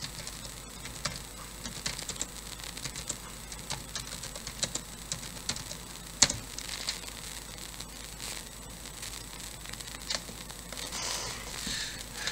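Irregular light clicks and taps of computer keys, with one sharper click about six seconds in.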